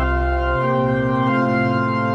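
Slow instrumental organ music: sustained held chords, with the bass note moving about half a second in and again near the end.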